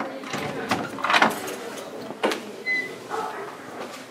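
Keys worked in the lock of a wooden door: a few sharp clicks and jingles about a second in and again just after two seconds, as the lock is turned and the door is opened.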